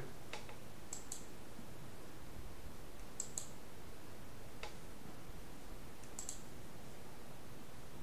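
Computer mouse clicking a handful of times, some clicks in quick pairs, over a faint steady background hiss.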